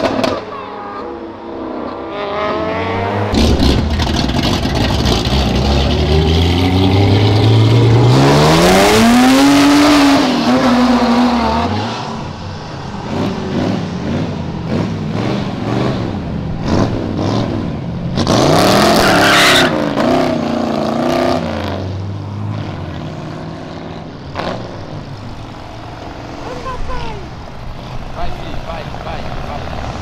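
Cars driving past with engines revving hard. A Lamborghini Aventador SVJ's V12 accelerates away, its note climbing steadily for several seconds and loudest near the top. About halfway through, a hot rod passes with another short, loud burst of revs, and traffic noise carries on afterwards.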